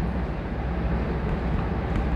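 Steady low background rumble with no distinct events, the recording's constant noise floor between spoken phrases.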